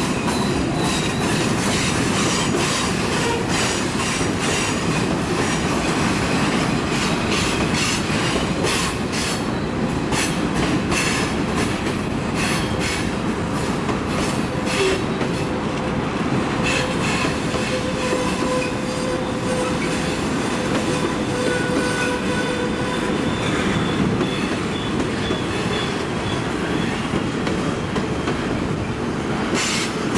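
Freight cars of a long mixed freight train rolling past on a curve: a steady rumble of steel wheels on rail with clicks from the rail joints. Thin squealing tones from the wheels come and go through the middle.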